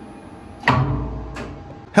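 Elevator machine's electromagnetic brake clacking, a sudden metallic knock about two-thirds of a second in, followed by a low rumble that fades and a second, smaller click about half a second later.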